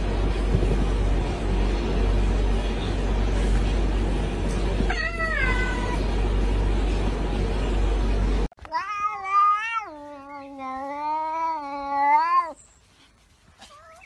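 Domestic cat calling: a short falling meow about five seconds in, then a long wavering yowl lasting about four seconds. A loud, steady, low rumbling noise runs under the first part and stops suddenly just before the yowl.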